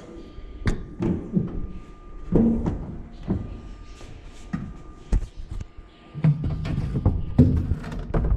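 Irregular clunks, clicks and knocks of a car's rear hatch and trunk floor cover being opened and handled by hand.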